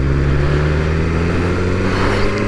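BMW S1000R's 999 cc inline-four engine running at a steady low-rev note as the bike rolls along slowly, with a hiss of wind and road noise on the onboard microphone.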